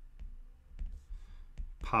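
Pen stylus tapping and scraping on a tablet screen during handwriting: a few short, faint clicks spread irregularly over a low hum, with a man's word beginning near the end.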